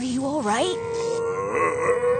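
A dazed older man's voice groaning and grunting as he comes round, over background music with a long held note.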